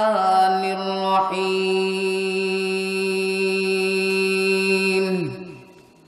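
A man's voice chanting Arabic in a melodic sermon-recitation style through a microphone. He holds one long, steady note for about five seconds, then his voice drops in pitch and fades out.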